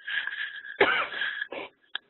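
A person with a sore throat coughing and clearing their throat: a raspy clearing, then a loud cough about a second in and a short one after it.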